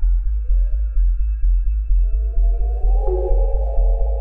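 Deep minimal techno: a steady low bass pulse about twice a second under sustained synth tones that swell from about halfway through.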